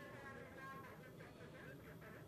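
Near silence: faint room tone with a faint buzz.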